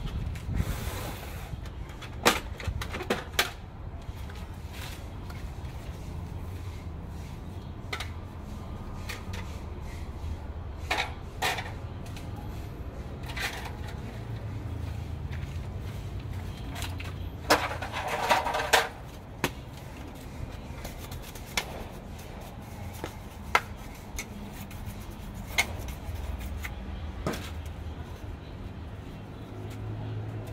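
Scattered clicks and knocks of laser printer parts being handled during disassembly, with a denser clatter about eighteen seconds in, over a steady low background rumble.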